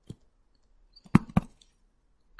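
Stylus tip tapping on a Surface Pro's glass touchscreen while writing: one faint tap near the start, then two sharper taps about a quarter second apart a little past the middle.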